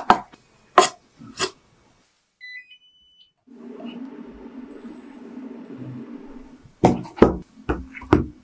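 A wooden spatula knocks a few times against a rice cooker's inner pot. Then come a few short electronic beeps stepping up in pitch, like a rice cooker's control panel, then a plastic spoon stirs thick mung bean porridge for about three seconds. Several sharp knocks follow near the end.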